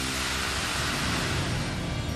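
A steady rushing noise that starts abruptly and eases off near the end, laid over background music with sustained low tones.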